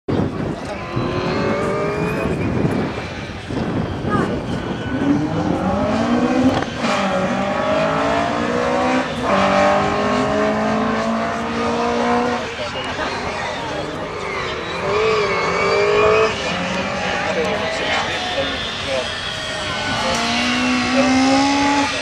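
Ford Puma sprint car's engine revving hard on a timed run. The note climbs and drops back again and again as it changes gear and slows for the corners.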